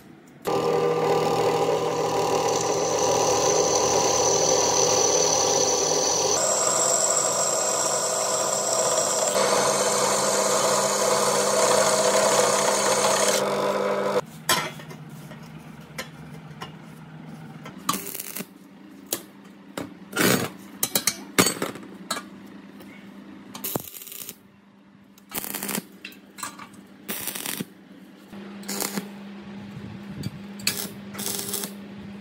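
An angle grinder cuts a steel flat bar. It runs steadily at high speed for about 13 seconds, and its pitch shifts twice as the disc loads up in the metal. Then it stops, and loose steel pieces clink and knock as they are handled and set in place.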